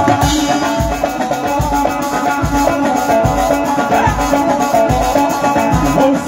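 A live band playing with no lead voice: a drum kit keeping a steady kick-drum beat, a little more than one a second, under a quick melodic line and shaken percussion.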